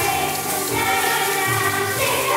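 Children's choir of fourth graders singing in unison over an instrumental accompaniment with a bass line.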